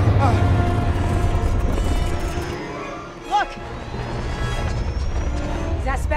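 Film score music over a low rumble that fades out about two and a half seconds in, with one short vocal cry about three and a half seconds in.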